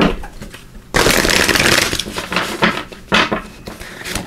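A deck of Art of Manifestation Oracle cards being shuffled by hand: a dense rattling burst of about a second, then a few shorter, softer card sounds.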